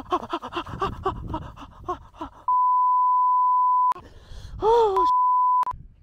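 A man's voice making quick, strained exclamations, then two censor bleeps at one steady pitch: one of about a second and a half in the middle and a shorter one near the end, with a brief strained cry between them.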